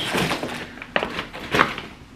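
Large plastic shopping bag being lifted and handled, rustling and crinkling, with sharper crackles about a second in and again about halfway through the second second.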